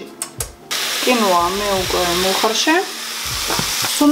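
Diced chicken frying in a nonstick frying pan: a steady sizzle that starts abruptly less than a second in.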